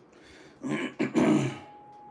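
A man clearing his throat in two short rasps about a second in, followed by a faint steady tone.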